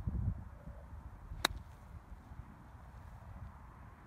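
Golf club striking the ball on a short pitch shot from clumpy grass: a single sharp click about a second and a half in.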